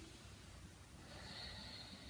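Faint breathing through the nose, one slow breath swelling about a second in, taken in time with a seated torso circle.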